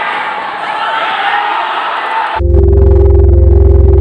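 Crowd noise in a large hall, with shouting and cheering, cut off suddenly about two and a half seconds in by loud electronic logo-intro music with deep sustained bass tones.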